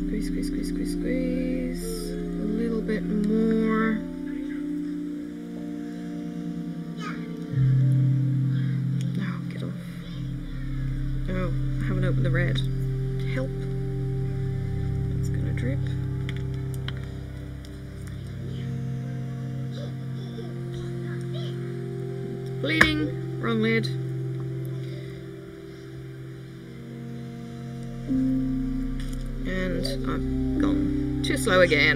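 Background music of long held notes that shift every few seconds, with scattered small clicks from handling; one sharp click about three-quarters of the way through is the loudest sound.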